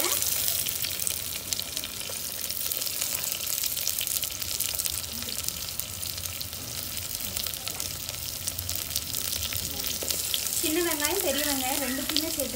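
Chopped onions and small onions frying in hot oil in a pot: a steady crackling sizzle.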